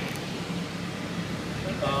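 Mitsubishi Lancer Evolution X's turbocharged four-cylinder engine idling, a low steady hum heard inside the cabin.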